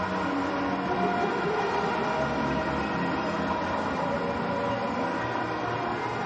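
Stadium crowd cheering a six, a steady roar of many voices with a few faint held tones running through it.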